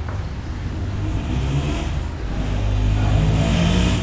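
A motor vehicle engine accelerating, rising in pitch and growing louder toward the end.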